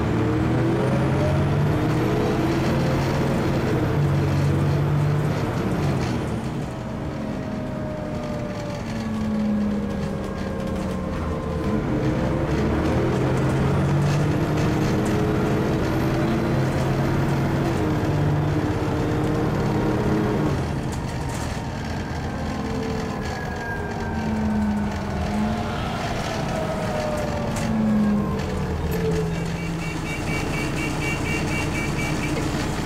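Dennis Trident 2 bus engine heard from inside the saloon, pulling hard through its 4-speed ZF automatic gearbox. The revs climb for several seconds and then drop sharply as the box changes up, about six seconds in and again about twenty seconds in, with a high whine rising alongside each pull. Shorter rises and falls follow near the end.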